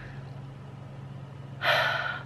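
A woman's loud, quick breath drawn in through an open mouth, a gasp, about a second and a half in, just before she speaks. Before it there is only a low steady hum.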